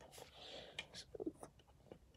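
Faint handling noise from a small plastic LEGO brick model being moved and set back down on a notebook, with a few small clicks and taps in the middle.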